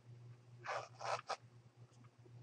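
Three faint, short clicks from computer mouse and keyboard handling, about a second in, over a low steady electrical hum.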